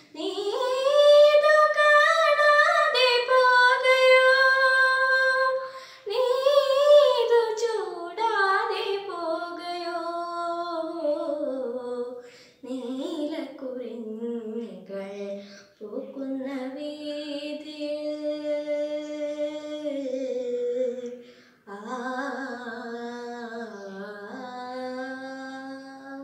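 A young girl singing a Malayalam film song unaccompanied, in long held, sliding notes with short breaks between phrases.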